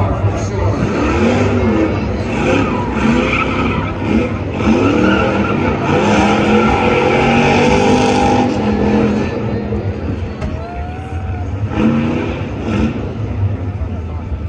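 Car engine revving hard during a burnout, its pitch rising and falling in repeated revs, with the spinning tyres squealing on the pavement. The revs are held high for a couple of seconds at the middle, then ease off.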